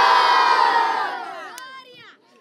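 A large group of children shouting and cheering together, many voices at once, dying away over the last second.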